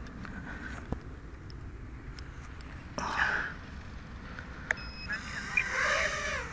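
Outdoor background with a few faint clicks, a short louder burst about three seconds in, then a brief electronic beep and a rising whine near the end as a small quadcopter's brushless motors spin up after a crash in the grass.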